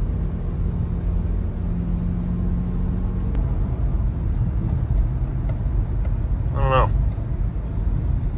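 2009 Subaru boxer engine and road noise heard from inside the cabin while the car climbs a hill, a steady low rumble, with an engine note held for about the first three seconds before it fades. The car is on a test drive after a used throttle body was fitted to cure shifting trouble, and the owner judges that it seems okay.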